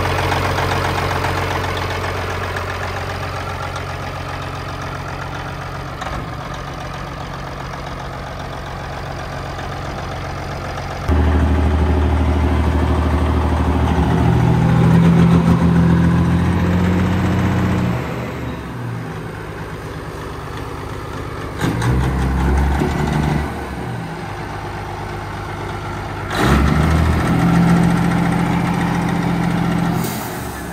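Semi truck's Caterpillar diesel engine idling, then revved: held higher for about seven seconds from about eleven seconds in, then blipped twice more near the end.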